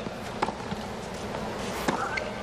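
Tennis ball struck by racquets in a baseline rally: two sharp hits about a second and a half apart, over a low murmur from the stadium crowd.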